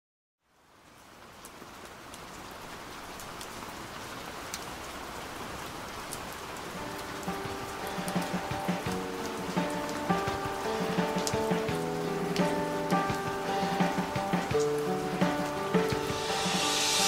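Rain fading in, a steady hiss with scattered drops, as the opening of a song's backing track. From about six or seven seconds in, a slow melody of held notes joins over the rain and grows louder.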